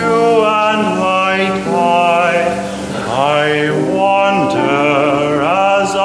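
A young man singing a vocal solo, with long held notes that waver in vibrato and glide between pitches.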